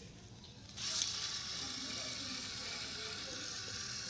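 Small LEGO electric motor starting about a second in and running steadily, its plastic gears whirring as it drives the model floodgate.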